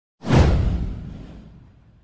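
A whoosh sound effect with a deep rumble under it: it starts sharply, sweeps down in pitch and fades out over about a second and a half.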